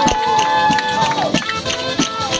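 Live folk music: a wooden folk pipe holds one long high note and slides off it after about a second, over a diatonic button accordion and a steady percussive beat.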